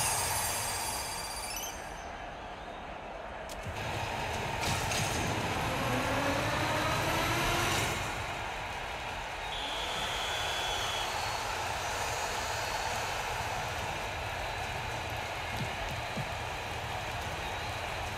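Sound effects from the NetEnt Super Striker video slot over a steady noisy background. A sweep of several tones rises together from about five to eight seconds in as the free-spins bonus is won, and a brief high steady tone follows around ten seconds.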